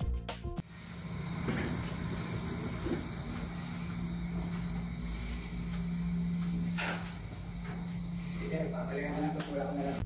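A steady low hum, with faint voices now and then and a single sharp knock about seven seconds in.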